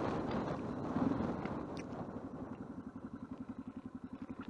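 Yamaha XT600E single-cylinder motorcycle engine dropping to low revs as the bike slows, its firing pulses coming as an even, rapid beat that grows quieter.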